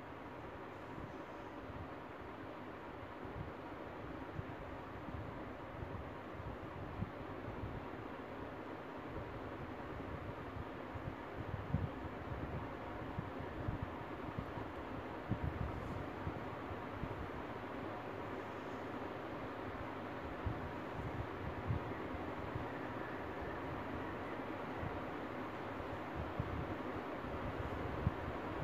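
Steady background hiss with scattered soft low bumps and rustles from hair being twisted and pinned into a bun close to the phone's microphone.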